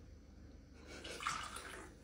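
Mountain Dew soda poured from a plastic bottle into a clear plastic cup: a faint splashing pour that starts about half a second in and fades out near the end.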